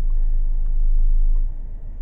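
A low, steady rumble with a noisy hiss above it, heavier for about the first second and a half and then easing.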